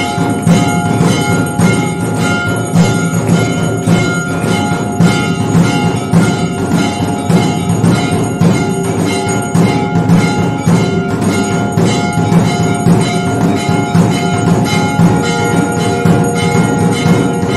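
Hindu temple bells ringing continuously, struck in a quick, steady rhythm together with drum beats, a loud metallic clanging that fills the shrine hall.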